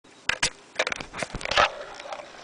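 A dog nosing about in a heap of sheer curtains: a string of short, sharp rustles and snuffles, the loudest about one and a half seconds in.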